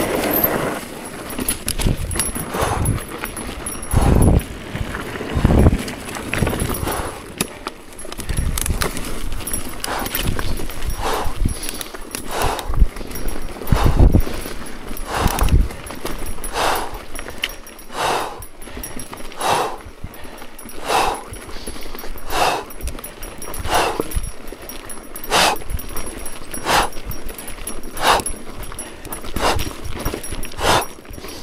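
A mountain biker breathing hard in fast, even puffs, about one breath every 0.7 s, while riding up a climb. In the first third, the bike knocks and thuds over rough trail.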